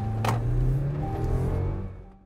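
Outro background music with a heavy bass line and sustained tones, a single sharp hit about a quarter second in, fading out near the end.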